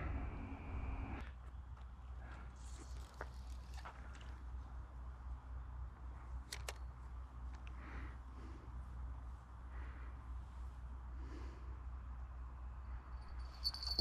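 Quiet outdoor ambience: a steady low rumble of wind on the microphone, with scattered faint rustles and small clicks. Near the end comes a brief faint high ring, a rod-tip bite bell jingling as a fish takes the bait.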